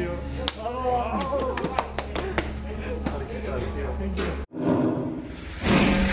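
Team crew celebrating in a race garage: indistinct excited voices with sharp hand slaps from high-fives and back-pats, over a steady low hum. About four and a half seconds in, it cuts abruptly to a swelling whoosh of a logo sting.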